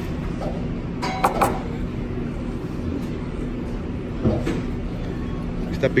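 Restaurant room noise with a steady low hum, broken by two quick clinks about a second in and a softer knock later on.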